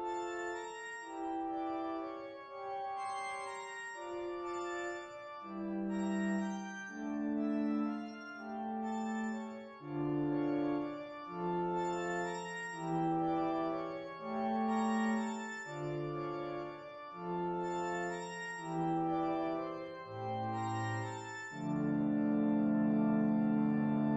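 Spitfire Audio LABS Pipe Organ, a sampled pipe-organ software instrument, playing a slow series of sustained chords that change every second or so over a moving bass line. Near the end it settles on a long, loud held chord.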